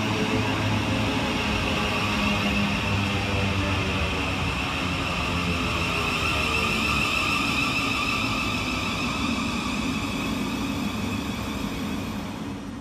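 Thameslink Class 700 (Siemens Desiro City) electric multiple unit moving along the platform, its steady rumble carrying a traction-motor whine that falls slowly in pitch as the train slows.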